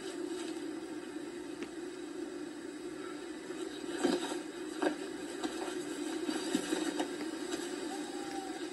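A steady low hiss heard through a TV's speaker, with a few faint soft knocks about halfway through.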